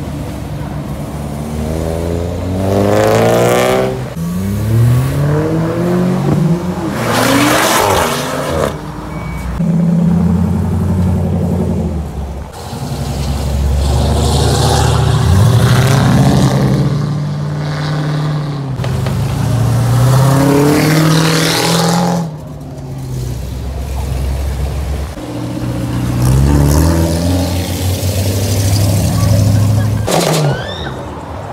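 Cars pulling away past one after another, each engine revving up hard and its pitch climbing through the gears. About half a dozen loud passes follow each other with short dips in between.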